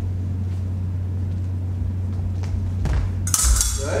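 A few faint footsteps on a wooden gym floor over a steady low hum, then, near the end, a fencer's lunge lands with a thud and the steel fencing blades clash and clatter briefly.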